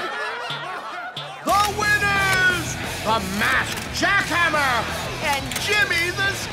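Cartoon character voices making wordless exclamations and snickering laughs, with background music coming in about a second and a half in.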